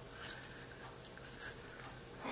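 Faint handling noise as small trigger parts are worked into a firearm receiver by hand: a few light scrapes and rubs of metal on the receiver.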